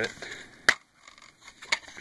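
A plastic DVD case snapping open with one sharp click, followed by a few lighter clicks as the case and disc are handled.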